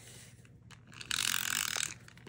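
Adhesive tape runner being rolled across cardstock: a fast, clicking whir from its dispensing mechanism that starts about a second in and lasts just under a second.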